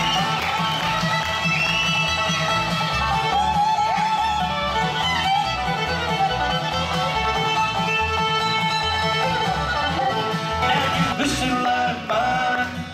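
Bluegrass band playing an instrumental passage: fiddle melody over acoustic guitar and banjo, with an upright bass keeping a steady beat.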